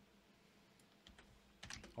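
Near silence: room tone with a few faint clicks from working at a computer.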